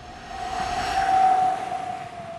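A whoosh sound effect that swells to a peak a little after a second in and then eases off, over a steady held tone: a logo sting.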